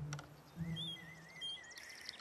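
Faint birds chirping and warbling in the background, a few short high chirps over a wavering call, with a low steady hum underneath.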